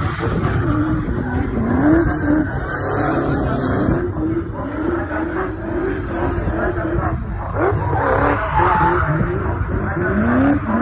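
Drift car sliding sideways with its rear tyres spinning and skidding, while the engine note rises and falls again and again as the throttle is worked through the slide.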